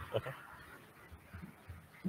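A man quietly says "okay", then faint room noise from a meeting room with a few soft low bumps.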